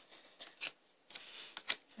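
Tarot cards being handled and laid out on a wooden table: a few light card clicks and a short rustle, with the sharpest snap a little before the end.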